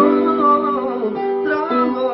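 A man singing a manele melody with a wavering, ornamented vocal line over piano chords, with the chord changing near the end.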